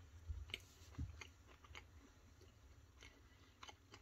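Faint chewing of a soft cake snack square, with a few small mouth clicks scattered through.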